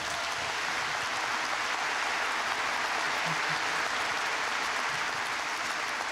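Large audience applauding: dense, steady clapping that swells in at the start and holds.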